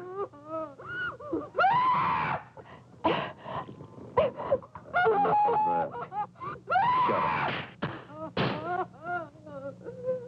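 A woman's voice wailing and moaning in distress, with no words: a run of rising-and-falling cries. The two longest and loudest come about two and seven seconds in.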